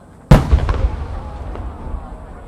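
A large No. 8 (8-go) aerial firework shell bursting: one sudden loud boom about a third of a second in, then a long low echo that slowly fades.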